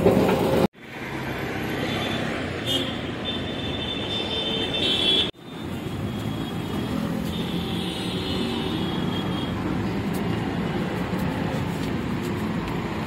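Steady road traffic noise along a busy city street, with a thin high-pitched tone sounding for a couple of seconds a few seconds in and again briefly later. The sound cuts out abruptly twice, just under a second in and about five seconds in.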